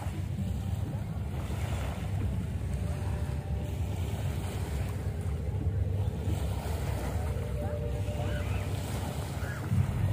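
Small sea waves lapping at the shoreline, with wind buffeting the microphone as a steady low rumble.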